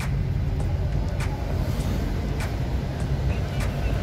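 Car driving slowly on a street, heard from inside the cabin: steady low-pitched engine and road noise, with a faint tick about every half second.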